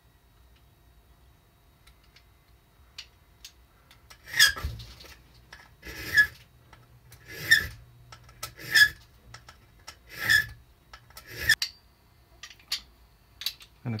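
Hand file rasping across a key blank clamped in a small bench vise: six slow, separate strokes, one every second and a half or so, beginning about four seconds in after a few faint clicks. The file is deepening a cut in the bitting of a key being made from scratch.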